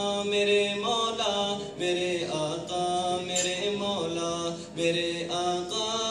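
A male voice singing an Urdu naat (nasheed), holding long, drawn-out notes that glide from pitch to pitch.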